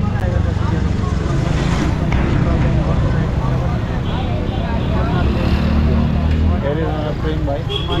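Motorcycle engines running at idle and low speed in busy street traffic, a steady low rumble, with background voices of people nearby.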